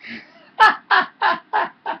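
A man laughing in five short, loud 'ha' bursts, each falling in pitch, about three a second.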